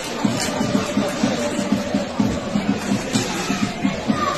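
Football supporters on the terraces chanting together over a drum beaten in a steady rhythm, about four beats a second.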